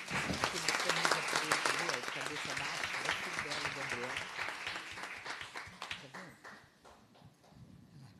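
Audience applause, loudest in the first two seconds and dying away by about six seconds in, with voices heard under it.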